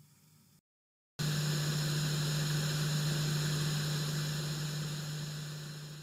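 A steady low hum under a bed of hiss, starting about a second in and slowly fading away.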